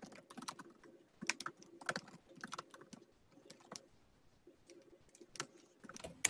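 Faint typing on a computer keyboard: irregular runs of quick key clicks with short pauses between them.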